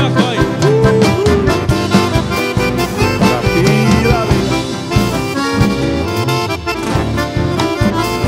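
Instrumental passage of a Paraguayan polka: accordion and saxophone playing the melody over strummed acoustic guitar, with a steady beat.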